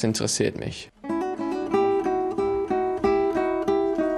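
Classical nylon-string guitar played fingerstyle: an even run of plucked notes starting about a second in, after a moment of a man's speech.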